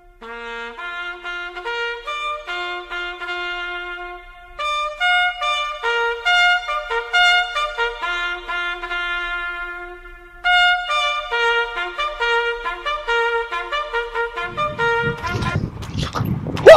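Trumpet playing a slow melody of held and short notes, in phrases with short breaks, with two notes sometimes sounding together. Near the end a loud, rough low noise comes in under it.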